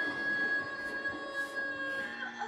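A woman's voice holding one long high sung note, steady after a slight drop in pitch at the start, heard through a TV speaker.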